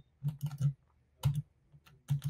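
Computer keyboard and mouse clicking, a few quick clicks at a time in three short clusters.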